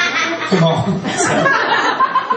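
Audience chuckling and laughing, with voices talking over it.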